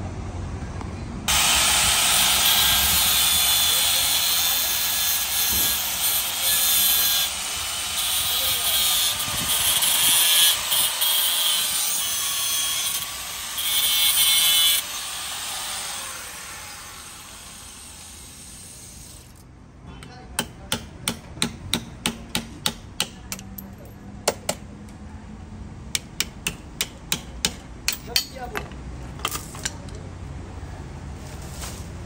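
A handheld power cutter grinding through the old motorcycle drive chain to cut it off: a loud, harsh, steady hiss that starts about a second in and dies away after about fifteen seconds. Later comes a run of about twenty sharp metallic clicks, roughly two a second.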